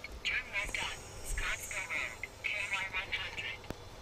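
Faint, thin talk that sounds as if it comes through a small radio or phone speaker, over the low rumble of a semi truck rolling slowly.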